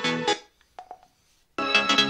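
Small portable Bluetooth speaker playing electronic music from its memory card. The music cuts off less than half a second in, a few short beeps sound in the gap, and a different track starts loud about a second and a half in: the track has been skipped with the speaker's arrow button.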